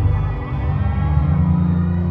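Music playing loud through a concert hall's sound system, recorded on a phone: deep held bass notes that shift pitch about half a second in and again around one and a half seconds.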